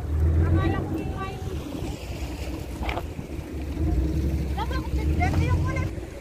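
Small boat's engine running steadily with a low rumble, with people talking briefly over it.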